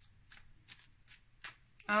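A deck of tarot cards being shuffled by hand: several soft, brief card flicks spread through the moment.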